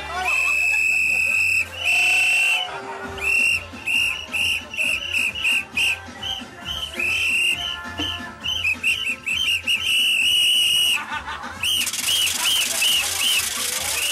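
A shrill whistle blown again and again, some blasts held for over a second and others in quick runs of short toots, over music. A loud burst of noise comes near the end.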